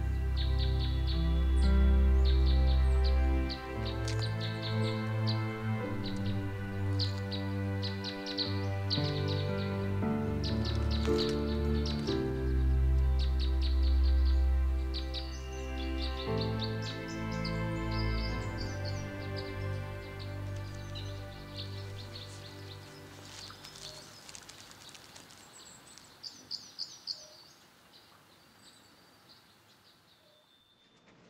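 Background music of slow, held notes over a deep bass, fading out over the last few seconds, with birds chirping throughout and a quick run of louder chirps near the end.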